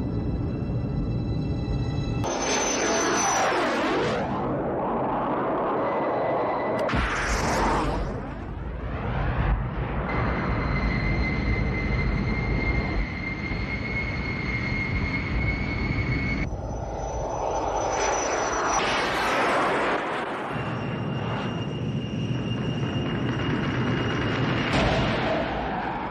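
Jet aircraft engine roar in a steep climb, swelling and fading in four passes: a few seconds in, around eight seconds, near twenty seconds and near the end. Orchestral film score plays under it, holding long notes in the middle.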